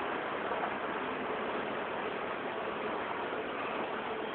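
A truck's engine running steadily under an even hiss.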